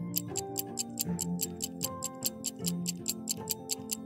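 Countdown stopwatch ticking, a fast, even run of several ticks a second, over soft background music with held notes.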